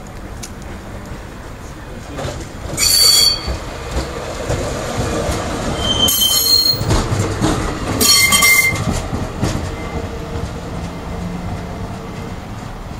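Vintage tram and its trailer passing close by on curved street track. The wheels squeal in three high, ringing bursts, about three seconds in, at about six seconds and at about eight seconds, over the rumble and clatter of the wheels on the rails.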